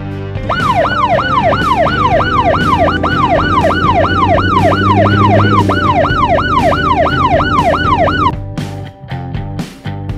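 Police siren in a fast yelp, its pitch sweeping up and down about three times a second over background music; it cuts off about eight seconds in.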